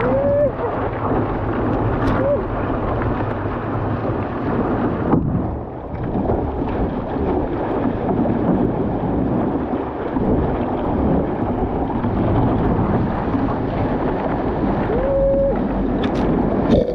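Wind buffeting the microphone and water rushing and splashing along the hull of a one-person outrigger canoe paddled fast through choppy swell, with spray hitting the bow-mounted camera. The rush dips briefly about five seconds in.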